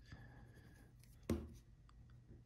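Pencil lead scratching faintly on Bristol paper as strokes are drawn, with one short sharp tap about a second and a quarter in.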